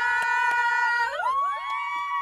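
Several women belting out one long held note together, their voices sliding up about an octave a second in and holding the higher note.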